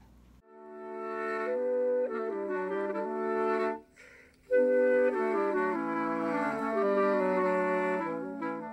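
Outro music: a wind ensemble playing sustained chords. It fades in over the first second, breaks off briefly near the middle, and comes back louder.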